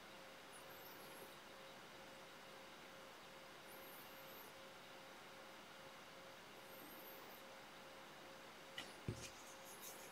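Near silence: room tone with a faint steady hum. Three very faint, brief high rustles come as slips of feather fibre are stroked together into a married salmon-fly wing, and a soft knock with a couple of clicks comes near the end.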